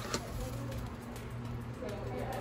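Indistinct background voices over a steady low hum, with a brief click just after the start.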